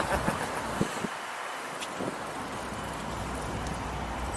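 Steady outdoor background noise: a low rumble under an even hiss, with a few faint clicks.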